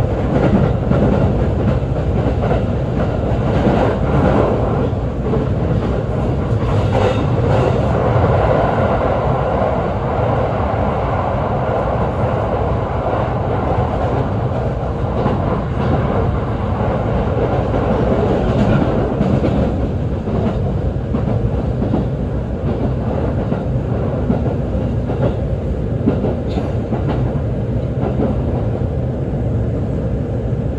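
Running noise of a JR East E531-series electric train at speed, heard from inside the passenger car: a steady noise of the wheels on the rails.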